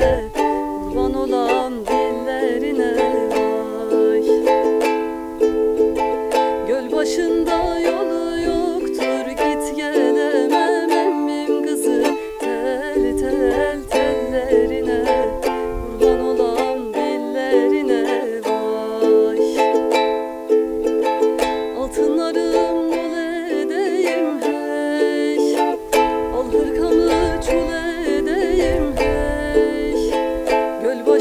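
A ukulele strummed in a steady rhythm, accompanying a woman singing a Turkish folk song (türkü) in wavering, ornamented lines that come and go.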